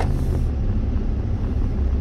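Steady low engine and road rumble of a truck being driven, heard from inside the cab, with one short click right at the start.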